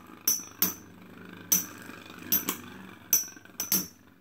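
Two metal-wheeled Beyblade spinning tops clashing in a plastic stadium. About eight sharp metallic clinks come at irregular intervals, some ringing briefly, over the faint steady whir of the tops spinning on the stadium floor.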